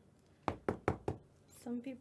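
Four quick, sharp knocks on a hard surface, about five a second, followed by a voice starting to speak near the end.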